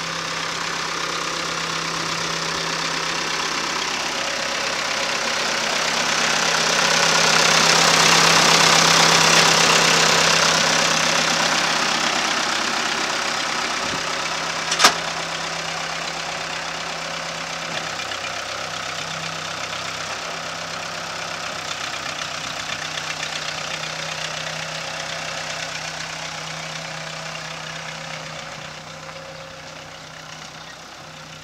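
Case 580C loader backhoe's engine running as the machine drives past on gravel. It grows louder as the machine comes close and fades as it moves away, over a steady low engine tone. A single sharp click comes about fifteen seconds in.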